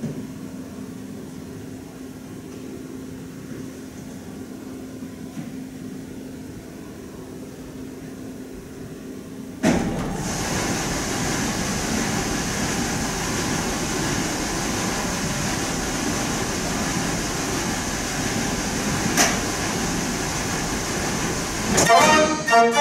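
Faint steady hum, then about ten seconds in a Mortier dance organ's wind blower switches on suddenly and runs with a steady, even rush of air. A single brief click comes near the end.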